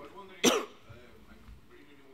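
A single short cough about half a second in, over faint background talk.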